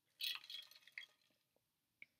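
A person sipping a drink from an insulated tumbler with a clear plastic lid: a short run of soft slurping and liquid sounds in the first second.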